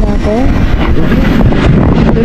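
Motorcycle engine running at low speed, with wind rumbling on the microphone; a voice speaks briefly near the start.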